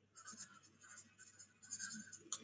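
Faint, irregular scratching of a pen writing on paper, heard over a video-call microphone.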